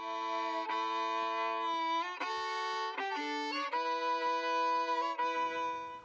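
Solo fiddle playing a slow tune in long bowed notes, each held a second or more, with a quicker run of notes in the middle.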